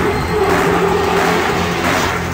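Drum and bass music from a DJ set played loud through a festival sound system, in a passage where the deep drums thin out and a held mid-pitched synth note carries over them.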